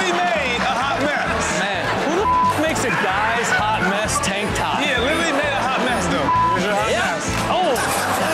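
Background music with a steady beat under a girl's excited shouting and laughing, with two short, high, steady bleeps about two seconds and six seconds in, the kind that censor words.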